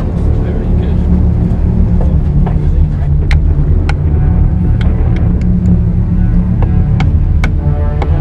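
A loud, steady low rumble with sharp knocks scattered through it, under faint background music.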